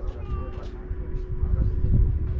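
Wind rumbling on the microphone, with faint voices of people around and a short high-pitched gliding call near the start.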